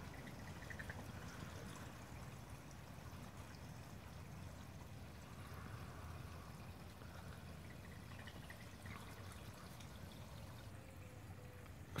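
Faint, steady trickle of running water in a garden pond.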